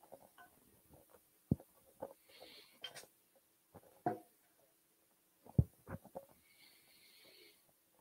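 Scattered clinks and knocks of metal cookware and utensils being handled, with two sharper knocks, one about a second and a half in and a louder one a little past five seconds.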